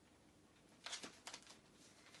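Near silence, broken about a second in by a few brief rustles of folded paper bags as a ribbon is threaded through their punched holes.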